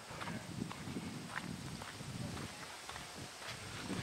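Footsteps of someone walking on a dirt driveway, an even walking rhythm of soft thuds, with the handheld camera being jostled.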